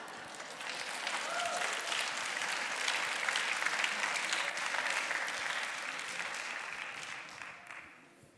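Audience applauding in a hall. It builds over the first second or two, holds, then dies away near the end.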